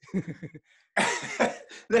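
Men laughing: a few short chuckles, then a loud, breathy burst of laughter about a second in.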